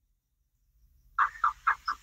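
Dead silence for just over a second, then a quick run of four short laughing syllables from a person's voice.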